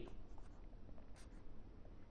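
Felt-tip marker writing on paper, faintly.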